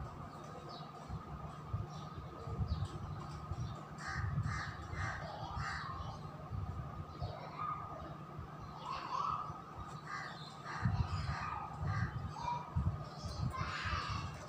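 Birds calling in runs of short repeated calls, about four seconds in, again around nine seconds and near the end, over a steady faint tone.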